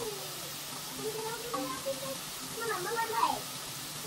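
Hot oil sizzling steadily as fries fry in a pot on the stove, with quiet voices talking in the background.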